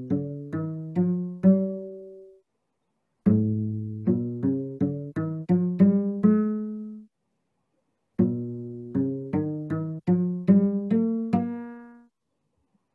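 Cello plucked pizzicato, playing rising major scales built from Kepler's string-length ratios. One scale, starting on G, ends just after the start; a second, starting on A, begins about three seconds in; a third, starting on B, begins about eight seconds in, with short silences between them. The A and B scales sound just a little bit off, because the ratios taken from the whole string do not carry over to a new starting note.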